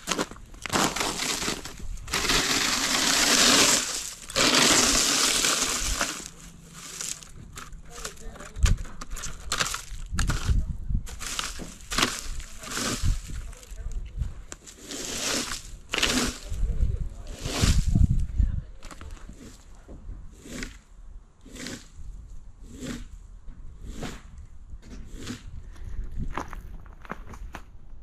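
Plastic leaf rake dragged across lawn grass and fallen twigs, stroke after stroke, the twigs crackling. The first few seconds hold two longer, louder sweeps, followed by many short rake strokes.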